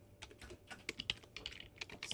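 Computer keyboard being typed on: a quick, irregular run of key clicks.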